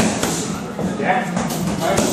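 Boxing gloves smacking into focus mitts as punch combinations are thrown: several sharp slaps in quick succession.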